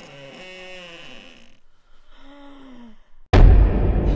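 A woman's frightened, breathy sighs, two of them, each falling in pitch, the second lower. Near the end a sudden loud, deep boom cuts in, a trailer impact hit that runs on as a low rumble.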